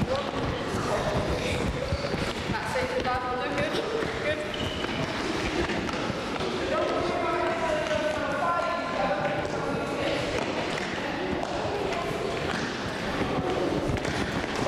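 Many children's feet thudding irregularly on a hard sports hall floor as they hop on one leg and land, with children's voices underneath.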